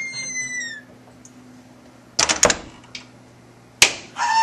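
Sharp smacks of a wooden paddle swat: a quick cluster of cracks about two seconds in and a single loud crack near the end, after a brief high squeak falling slightly in pitch at the start.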